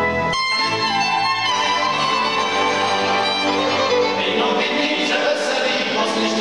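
Cimbalom band of violins, cello and cimbalom playing a Moravian folk Christmas carol. The band members join in singing from about four seconds in, with the violins dropping away.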